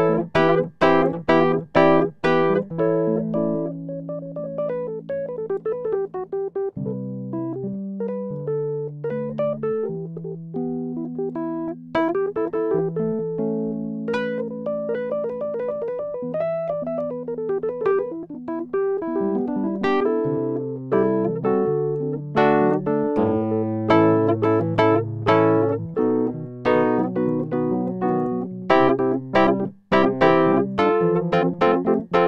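Piano-voiced keyboard music played with both hands on a Roland PC-180 MIDI keyboard. Held bass notes sit under a melody, with quick runs of struck notes in the first couple of seconds and again through the last third.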